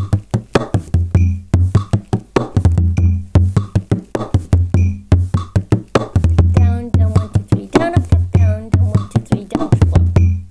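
Bodhrán played with a tipper in a 9/8 slip-jig rhythm at 100 bpm. It repeats a pattern of accented double downstrokes on beats 1 and 7, a skip, and an up-down-up "triplet", with sharp tipper strokes over the drum's deep boom.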